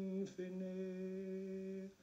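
Unaccompanied male voice singing a slow ballad, holding a long low note that breaks briefly about a quarter second in, then holds again at the same pitch and stops just before the end.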